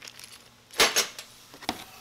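Small metal hardware clinking inside a plastic bag as it is handled, with faint plastic rustling: two sharp clinks just under a second in and a lighter one near the end.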